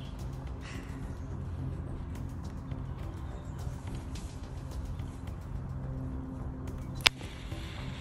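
A single sharp snap about seven seconds in as the pull-ring smoke grenade is set off, over a steady low hum.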